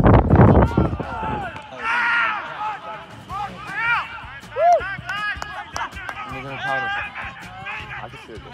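Loud rumbling noise for about the first second, then a string of raised voices calling out in short rising-and-falling shouts that fade toward the end.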